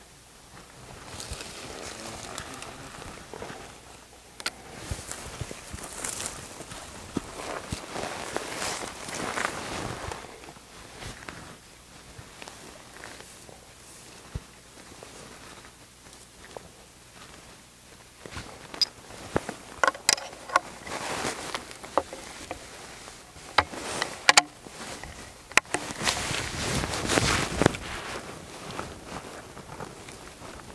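Clothing and dry grass rustling as a shooter gets down prone with a Springfield Trapdoor rifle. A quick series of sharp clicks comes about twenty seconds in as the rifle is handled, then more rustling near the end.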